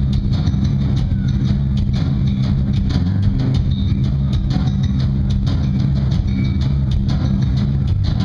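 Live rock band playing an instrumental passage: heavily distorted electric guitars and bass guitar held in a dense, steady low drone, with drum hits running through it.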